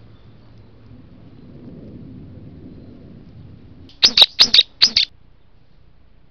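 A bird giving a quick run of short, shrill calls, four or so in about a second, some four seconds in.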